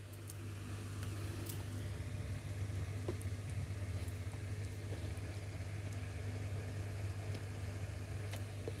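A steady low hum, like a motor running, with a few faint clicks over it.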